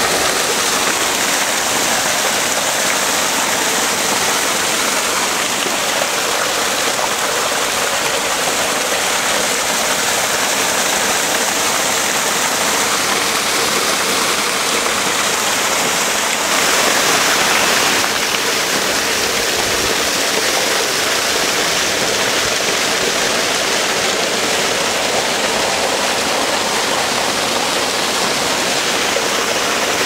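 A small mountain stream cascading over boulders: a steady rush of falling water that swells briefly a little past the middle.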